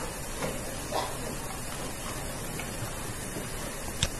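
Steady background hiss of a classroom lecture recording, with two faint brief sounds about half a second and one second in.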